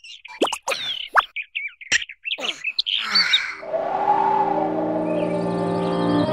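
Quick squeaky chirps and fast whistling pitch sweeps, as in cartoon chirping sound effects, fill the first half. Background music with long held notes comes in about halfway.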